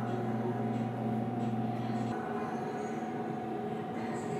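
Steady machine hum made of several held tones, its lowest part cutting off about two seconds in.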